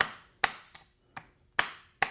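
Urethane-headed farrier's hammer striking a steel clinch cutter set in the crease of a horseshoe: sharp knocks, about four strong blows with lighter taps between, loosening the nail heads so the shoe can be pulled.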